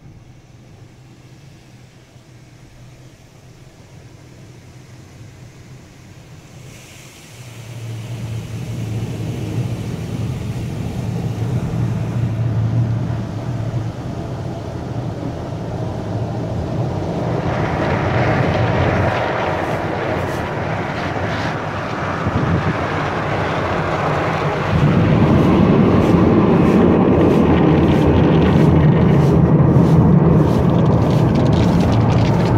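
An automatic soft-cloth car wash heard from inside the vehicle: water spray on the body, with a low machinery hum joining about seven seconds in. The noise of spray, foam and scrubbing builds in steps and is loudest in the last few seconds, as water and cloth sweep over the windshield with a fast rhythmic slapping.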